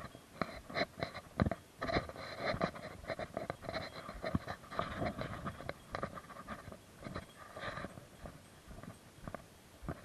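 A hiker breathing hard while walking, with irregular footsteps on a rocky trail; the breathing is heaviest through the middle of the clip.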